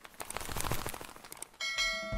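Intro-animation sound effects: a run of light clicks and ticks that fades out, then a bright bell ding about one and a half seconds in, ringing on.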